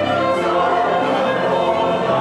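Operetta chorus singing with the pit orchestra, in sustained, full-voiced notes over strings.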